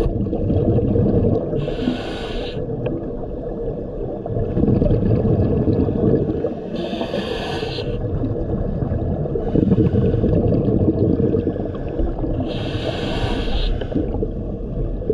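A scuba diver breathing through a regulator underwater. There are three inhalations, each a hiss lasting about a second, roughly every five seconds. Between them comes the low rumbling gurgle of exhaled bubbles.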